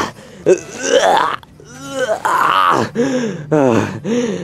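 A man's voice groaning and grunting with strain in about three drawn-out efforts, the pitch of each sliding up and down, as if struggling to pack hard snow.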